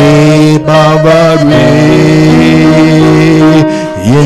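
Worship song sung in Tamil with instrumental accompaniment: the voices move through a phrase, then hold a long steady note that breaks off shortly before the end.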